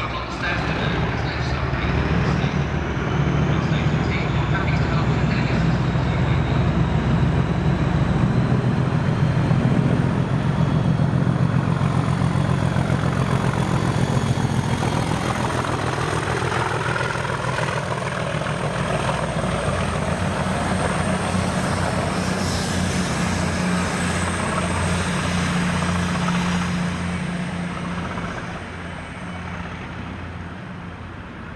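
Class 37 diesel locomotive 37407, its English Electric V12 engine running under power, with wheel and rail noise as it passes. The sound is loudest about ten seconds in, eases somewhat, and fades near the end.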